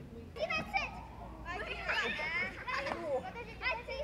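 Children's voices while they play: several children calling out and chattering at once, high-pitched.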